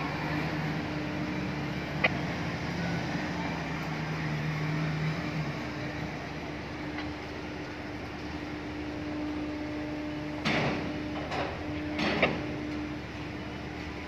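Port crane machinery running with a steady hum, a lower drone joining it for the first five seconds and a single click about two seconds in. Near the end come three short, loud noises about a second apart.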